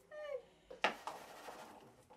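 A short, high-pitched young cry, falling in pitch, then a sharp knock about a second in as a cup lands on the tabletop.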